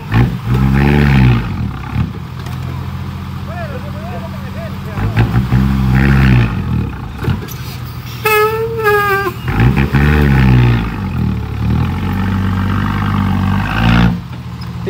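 Diesel engine of a loaded dump truck revved hard three times, each rev rising and falling, with lower steady running between. About eight seconds in, a loud wavering high-pitched cry lasts about a second.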